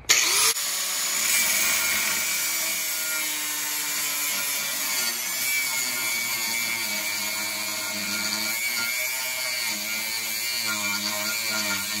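Electric angle grinder with a cutoff wheel spinning up with a quick rising whine, then cutting steadily through a steel bolt head, its pitch wavering as the disc bites under load. The bolt is being cut off because its captive nut spins inside the frame.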